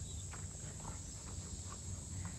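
A steady high-pitched drone of insects, with faint, irregular crunching footsteps on a dirt path.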